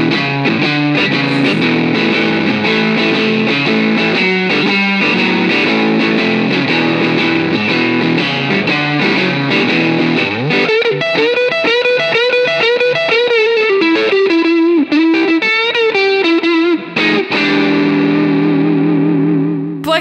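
Electric guitar, a Fender Stratocaster, played through the Universal Audio UAFX Dream '65 amp-emulator pedal with an overdriven Texas-blues tone. It plays chorded riffs, then from about halfway a single-note lead with string bends, ending on a chord left to ring out.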